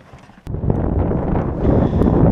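Wind buffeting the microphone on open water, a loud low rumbling noise that starts abruptly about half a second in.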